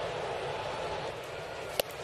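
Ballpark crowd murmur, with one sharp pop near the end as a pitched baseball smacks into the catcher's mitt.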